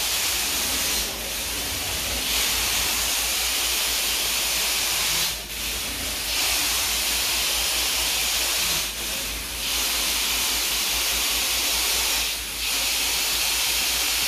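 Carpet-cleaning extraction wand on an Everest 650 machine being stroked across carpet tile: a steady hiss of suction and spray over a low machine hum. The hiss dips briefly about every three to four seconds.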